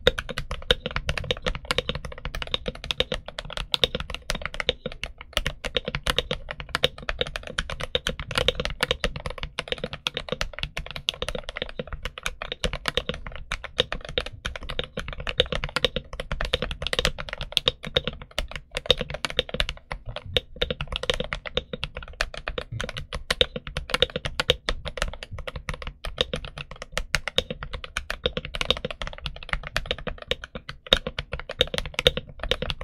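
Continuous fast typing on an FL Esports CMK98 full-size mechanical keyboard fitted with Kailh Box Red linear switches and PBT SA-profile keycaps, heard close up as a dense, steady run of keystroke clacks. The sound is not too loud and a little listless, lacking oomph.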